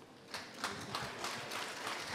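Audience applauding, a dense patter of many hands clapping that starts about a third of a second in.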